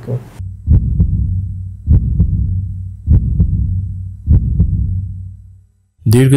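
A heartbeat-style sound effect: four deep double thumps, one pair about every 1.2 seconds, each with a low ringing after it, dying away near the end.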